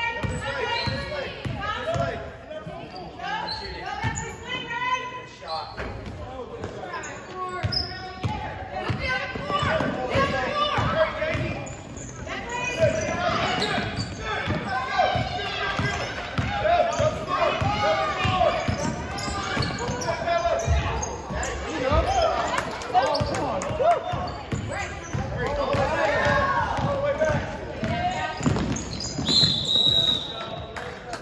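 A basketball bouncing on a hardwood gym floor as players dribble, with voices calling out echoing around the gymnasium. A short, high, steady whistle sounds near the end.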